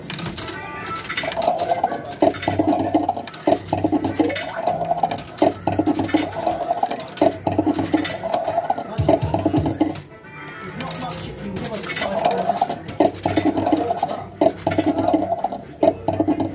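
Fruit machine playing a looping electronic jingle dotted with sharp clicks while a win counts up on its bank meter. The tune breaks off about ten seconds in, then starts again.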